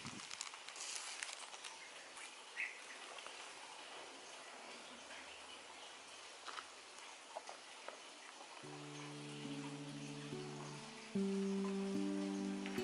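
Plastic wrapping peeled off a magazine, faint crinkling and small clicks over a quiet outdoor background, mostly in the first couple of seconds. Acoustic guitar music comes in about three-quarters of the way through and gets louder near the end.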